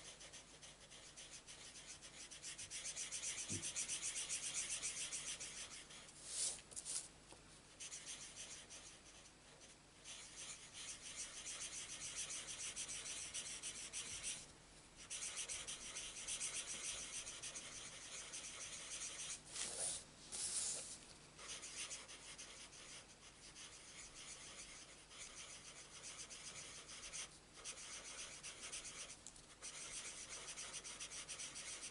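Alcohol marker tip rubbing over cardstock as a flower is coloured in small circular strokes: a faint scratchy hiss that stops and starts with the strokes, with a couple of brief taps.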